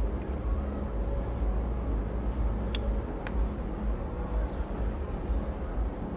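Steady low outdoor rumble with an even haze over it, broken by two faint short clicks about three seconds in.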